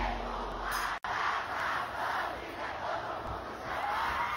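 A large concert crowd shouting and cheering, with a momentary dropout about a second in.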